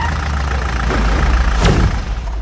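Jeep engine running with a low, steady rumble.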